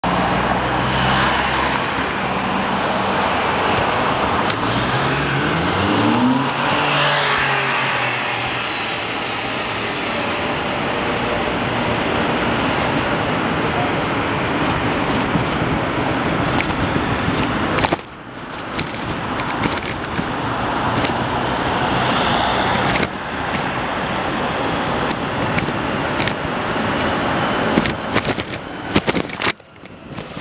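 City street traffic noise heard from a moving bicycle: a steady rush of road and traffic noise, with a motor vehicle's engine rising in pitch as it accelerates in the first several seconds. The noise drops briefly about two-thirds of the way through, then returns with scattered knocks and clicks.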